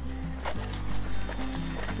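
Background music: low, steady bass notes held under the soundtrack, moving to a new chord about half a second in.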